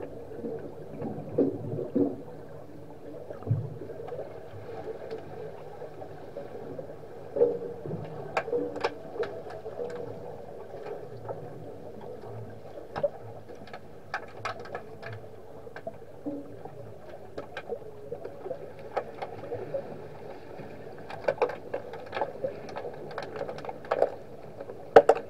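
Swimming-pool water heard underwater: a steady muffled hum with many sharp clicks and clacks scattered through, in bunches, from underwater hockey play on the pool floor.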